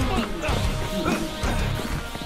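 Dramatic anime fight soundtrack: background music with crashing impact sound effects and a voice.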